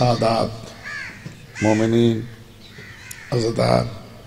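A man's voice through a public-address microphone, speaking in three short phrases with pauses between them.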